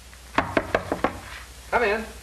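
Five quick knocks on a wooden door, followed near the end by a man's short spoken reply.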